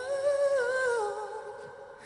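A male singer holding one long, high note into a microphone, the pitch easing slowly downward as the note fades away near the end.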